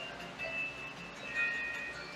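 Retro video game music playing from a TV: a simple melody of a few held high notes, each about half a second long.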